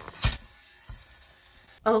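GoGoLint fabric shaver running over a wool blazer: a faint, even hiss, with one sharp click just after the start. A woman starts speaking near the end.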